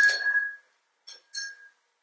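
A paintbrush knocking against a glass jar of rinse water: the glass rings and fades, then two light clinks about a second in, the second ringing briefly.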